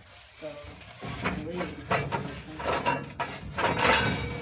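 Light metallic clinks and rattles of metal fireplace parts being handled in a gas fireplace's firebox, starting about a second in.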